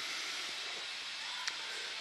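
Steady background hiss, with one small click about one and a half seconds in.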